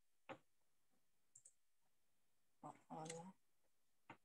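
Near silence on a video call, broken by a single click early on and a couple of faint ticks, then a short burst of a voice about three seconds in.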